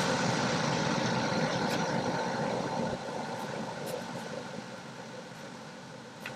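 Ballpoint pen scratching and rubbing across paper while writing; louder for about the first three seconds, then softer.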